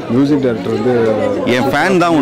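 Only speech: a man talking into a handheld microphone.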